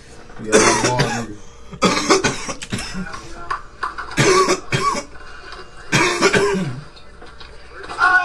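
A person coughing hard, four rough coughing fits one to two seconds apart.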